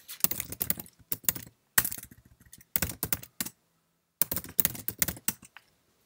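Typing on a computer keyboard: quick runs of keystrokes in several bursts with short pauses between, entering commands at a terminal.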